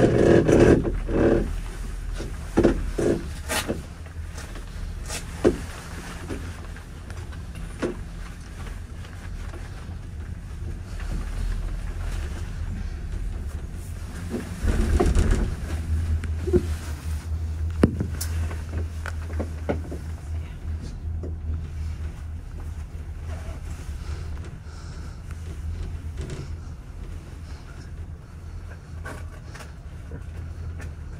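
Steady low rumble of a moving gondola cabin riding along its haul rope, with scattered light clicks and knocks. A short burst of voice-like sound comes right at the start, and the low rumble swells louder about halfway through.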